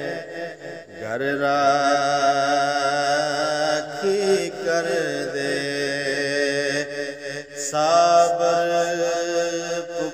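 A man singing a Punjabi Sufi kalam in long, held, wavering notes. Short breaks come about a second in and again near the three-quarter mark.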